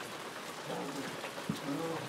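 Puppies making short, pitched play growls, two of them, as they pull together at a cloth in a tug of war, with one sharp knock about one and a half seconds in.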